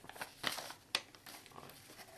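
Hands rummaging through paper and foam packing peanuts in a cardboard box, with short rustles and crinkles in the first second and one sharp click just before the middle, then fainter rustling.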